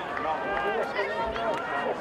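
Several voices of sideline spectators and players calling out and chattering over one another during rugby league play, with no single voice clear.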